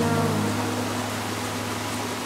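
Background pop song in a gap between sung lines: a held vocal note trails off at the start over sustained low synth chords, with a steady hiss underneath.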